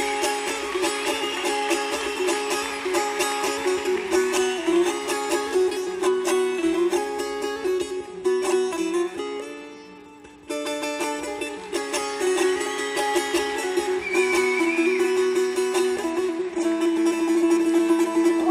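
Long-necked lute played solo and live, a fast, rhythmic plucked melody that fades down about halfway through, then comes back in suddenly at full strength.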